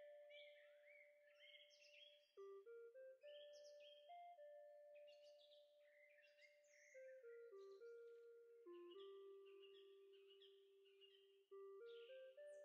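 Faint background music: a slow melody of held notes stepping up and down, with short bird-like chirps over it.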